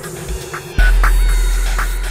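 Electronic synthesizer music with ticking percussion, short high blips and faint gliding tones. About a second in, a deep sub-bass note hits and slowly fades.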